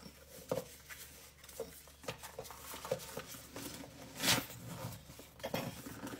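Rustling of a plastic piping bag being opened and worked down into a cup, with scattered light taps and one louder rustle about four seconds in.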